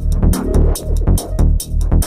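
Psytrance music: a steady kick drum a little over two beats a second, with pulsing bass notes and hi-hats between the kicks.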